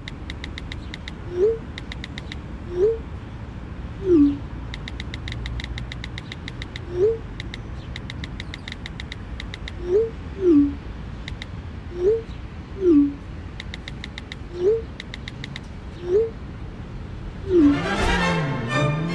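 iPhone keyboard clicks in quick runs as a text message is typed, each message broken by a short blip, rising for one sent and falling for one received. A steady low outdoor rumble lies underneath.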